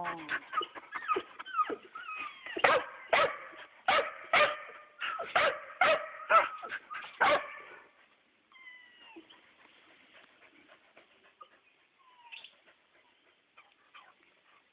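Repeated high, pitched animal calls, about two a second, loudest over the first seven seconds or so, then dropping to faint whimpering calls with sliding pitch for the rest.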